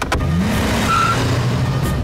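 A click, then a car engine revving up with a rising note and running on steadily as the car drives off.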